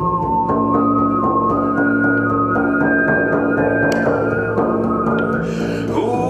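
Male overtone singing: a steady low vocal drone with a high, whistle-like overtone melody stepping upward and then back down above it, accompanied by steady beats on a large frame drum struck with a felt beater. Near the end the high whistling line breaks off.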